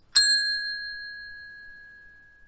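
A single bell-like 'ding' notification sound effect, struck once and ringing out with a clear tone that fades slowly over about two seconds.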